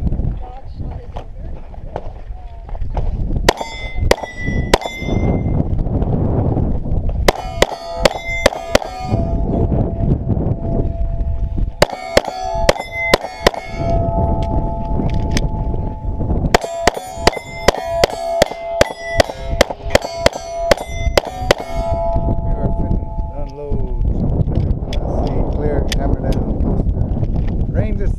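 A pistol firing at steel plate targets, each shot followed by the clang and ring of struck steel. The shots come in four quick strings, the longest, about a dozen shots, between about 16 and 22 seconds in.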